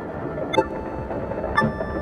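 Electronic music from an Elektron Analog Four analog synthesizer, sequenced by an Octatrack and looped in an Empress Zoia: sustained tones under sharp, clicky hits about a second apart.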